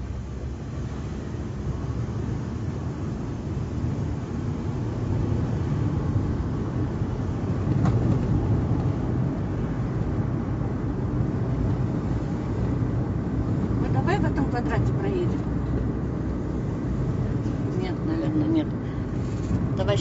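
Car cabin road noise while driving: the engine and tyres give a steady low rumble, heard from inside the car. A faint voice comes in briefly twice in the second half.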